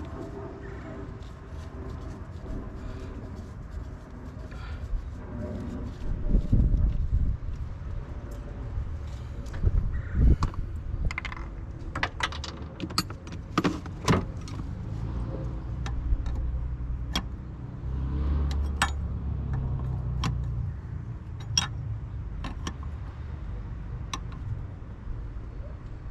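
Metal hand tools clinking and clicking irregularly as a wrench is fitted to and turned on the power-steering pressure-line fitting of a hydroboost brake booster, and tools are picked out of a toolbox. The clicks are sharp and scattered over a low background rumble.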